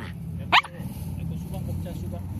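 A Bichon frisé gives one short, sharp bark about half a second in, over a steady low background hum.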